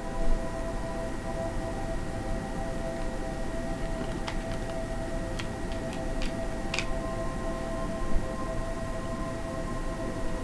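Ambient background music of steady, held tones like a singing-bowl drone, with a new tone coming in about seven seconds in. A few faint clicks sound in the middle.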